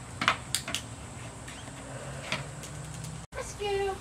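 A few short, sharp taps and clicks, mostly in the first second with one more past the middle. Near the end a brief drop-out is followed by a short spoken word.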